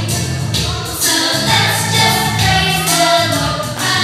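A choir of voices singing together, loud.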